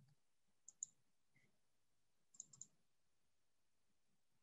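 Near silence broken by faint computer mouse clicks: two close together just under a second in, then three in quick succession around two and a half seconds in, as a presentation is being opened on screen.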